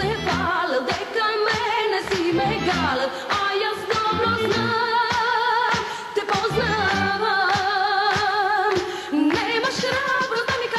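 A woman sings a Macedonian pop-folk song with a strong vibrato, backed by a band with a steady beat.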